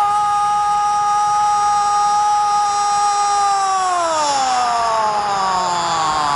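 Spanish-language football commentator's long drawn-out goal cry, "gooool", one held note for about three and a half seconds that then slides slowly down in pitch, with stadium crowd noise underneath.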